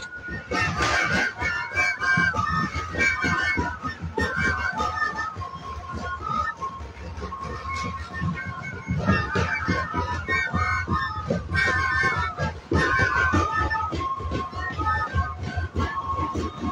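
Live band music played outdoors: a high, wind-instrument melody over steady drumbeats.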